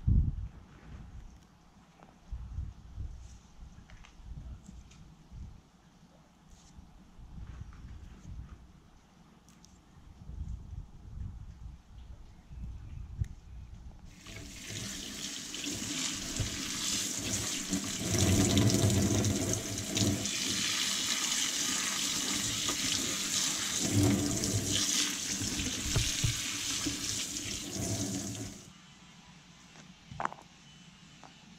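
Tap water running into a sink as a bunch of rosebay willowherb stalks is rinsed by hand under the stream, starting about halfway in and cutting off abruptly near the end. Before it, only quiet low rumbling and faint handling sounds as the leaves are stripped from the stalks.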